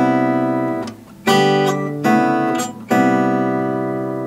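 Crafter Kage-18 acoustic guitar strumming a C major 7 chord. The chord is struck about four times, each left to ring and fade: at the start, just over a second in, around two seconds, and just before three seconds.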